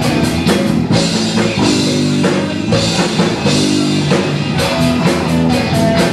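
Live rock band playing with electric guitars, bass guitar and drum kit. The steady drum beat eases back into held chords about a second in and comes back in full about four and a half seconds in.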